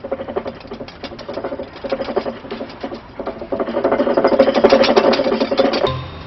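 Low, rattling growling from a human voice during a face-to-face standoff, getting much louder about halfway through and breaking off just before the end.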